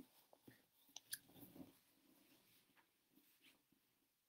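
Near silence: faint room tone with a few soft clicks and small handling noises in the first two seconds.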